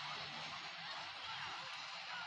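A dense, steady din of many cartoon episode soundtracks playing over one another at once, with voices, music and effects blurred together so that no single sound stands out.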